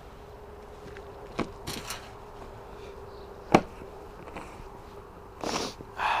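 Knife cutting a bell pepper on a plastic cutting board: a few light clicks and one sharp knock of the blade hitting the board about three and a half seconds in, then a short scraping cut near the end.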